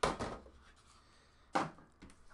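Two short handling noises, about a second and a half apart, as card boxes and cases are moved and set down on the tabletop.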